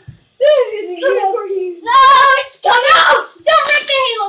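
A child's high voice making long, wordless sing-song sounds, with harsher shouts about three seconds in.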